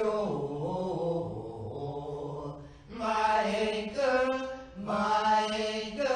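Singing of a church special-music piece, in long held notes, with short breaks between phrases about three and five seconds in.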